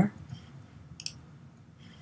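A single computer mouse click about a second in, against a quiet room background, as a new colour swatch is selected on a shopping web page.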